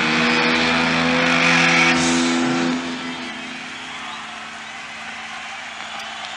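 Live rock band holding a loud, distorted electric-guitar chord that rings out and cuts away about two and a half seconds in. It leaves a quieter, steady wash of noise.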